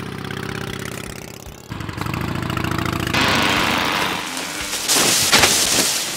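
Motorcycle engine sound effect, running with a fast buzzing pulse and picking up about two seconds in. From about three seconds a loud rush of noise builds, with a louder burst about five seconds in.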